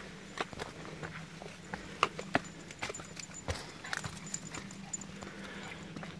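Footsteps on stone steps and ground: a string of light, irregular knocks and scuffs, about two or three a second.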